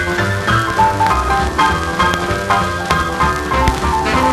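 A 1948 postwar rhythm-and-blues combo recording from a 78 rpm single: a boogie instrumental for piano, saxophones, trumpet, bass and drums with a steady beat.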